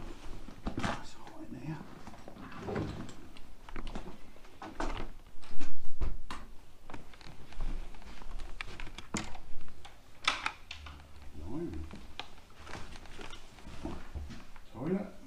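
Handling noise from a handheld camera carried around a small room: scattered knocks, clicks and rubbing, with one loud bump about five and a half seconds in. A faint, indistinct voice murmurs now and then.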